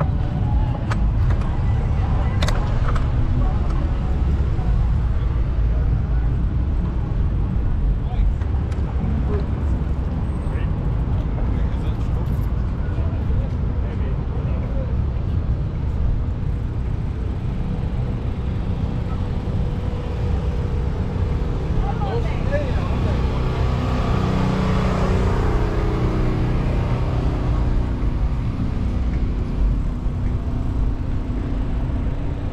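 City street traffic heard from a moving bicycle, under a steady low rumble of wind on the microphone. A louder passing vehicle swells and fades between about 22 and 27 seconds in.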